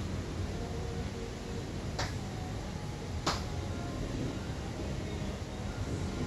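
Steady low background hum of a room, broken by three short, sharp clicks or taps: one right at the start, one about two seconds in, and the loudest a little over three seconds in.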